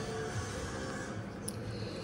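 Background music playing steadily, with one short click about one and a half seconds in.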